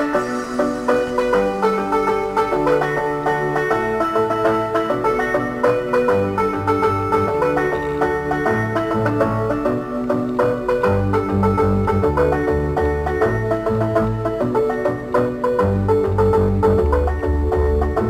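Instrumental background music: a tune of pitched notes over a bass line that grows stronger a few seconds in.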